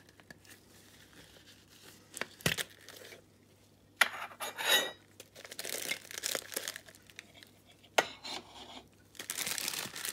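A Funko Soda collectible can being opened: sharp metal clicks and clinks as the can's lid is worked off, with a loud crack about four seconds in, then rustling and crinkling of the packaging inside. Another sharp click comes about eight seconds in.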